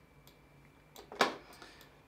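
Quiet room tone with a single sharp click a little over a second in, and a fainter tick just before it.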